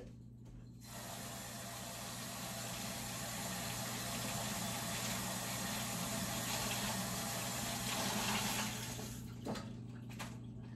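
A kitchen tap running steadily into a sink, used to rinse shrimp. It turns on about a second in and shuts off near the end with a small knock.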